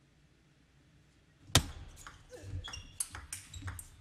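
Near silence, then about a second and a half in a sharp, loud click of a table tennis ball struck hard. A quick string of lighter ball clicks off rackets and table follows through the rest of the rally.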